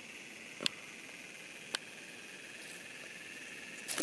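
Insects chirring steadily in the background, with two brief sharp clicks about a second apart.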